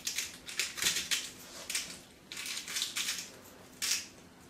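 Sea salt grinder being twisted over a bowl, grinding salt in several short bursts.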